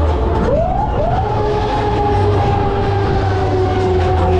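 A siren wailing over loud fairground ride music: it swoops up about half a second in, then holds and slowly slides down in pitch, with a steady deep bass beat underneath.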